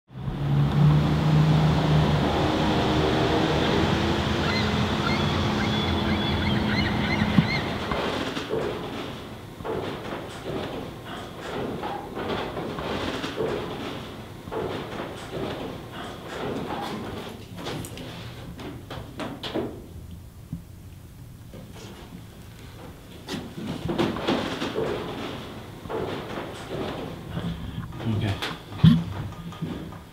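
For about seven seconds, a steady sound of several held tones that step between notes. It then gives way to irregular knocks, clunks and footfalls from climbing inside an enclosed brick tower shaft, with muffled voices near the end.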